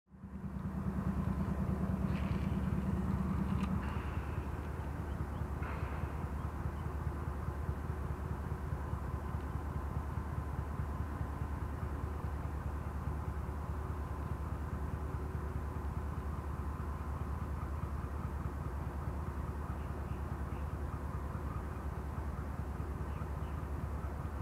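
A steady low engine rumble with a fast, even pulse, a little louder with an added hum for the first four seconds.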